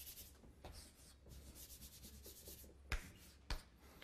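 Faint scratching of a pen drawing a line on a diagram, in two stretches of strokes. Two sharp clicks follow, about three seconds in and half a second apart.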